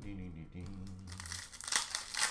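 Foil trading-card pack wrapper crinkling and tearing as it is ripped open, a quick crackle near the end.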